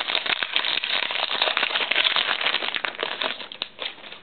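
Trading-card pack wrapper crinkling and crackling as it is handled and torn open; the crackle dies down near the end.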